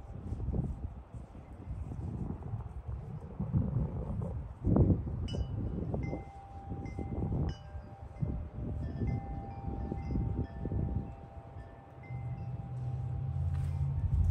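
Wind chime ringing, several notes sounding and fading from about five seconds in, over a rumble of wind on the microphone and the rustling and soft knocks of hands working plants into a soil-filled container.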